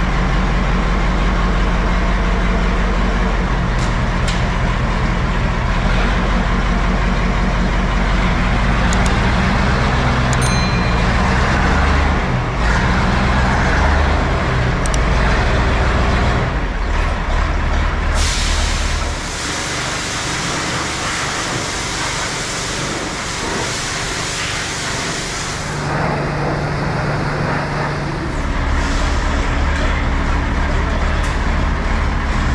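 MAN KAT1 army truck's air-cooled diesel engine running under load as the truck climbs a steep ramp. After about eighteen seconds a loud steady hiss takes over for several seconds, and the engine comes back up near the end.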